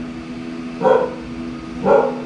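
A dog barking twice, about a second apart, over a steady background hum.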